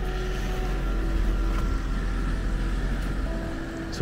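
A car driving past on the road and away, a steady noise of engine and tyres with a strong low rumble that swells and then eases off near the end.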